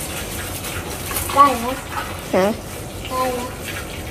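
Water from a garden hose pouring into a large aluminium pot of husked corn cobs, a steady splashing gush as the pot fills. A few short spoken phrases come over it in the middle.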